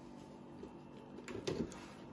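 Faint handling of wooden honey frames in a wooden hive super, with a few light wooden knocks about one and a half seconds in.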